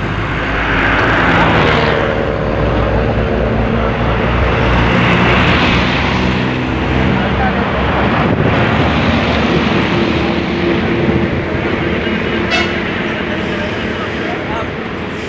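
Highway traffic: diesel truck engines running and passing, with tyre and road noise throughout, and a brief high pulsing sound near the end.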